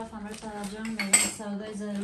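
Cutlery and dishes clinking as they are handled, with one sharp metallic clink about a second in, over a steady low humming tone.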